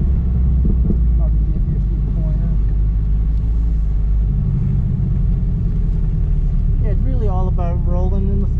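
Porsche 718 GTS engine running steadily at low speed, a low drone heard from inside the cabin as the car rolls slowly. A voice starts speaking about a second before the end.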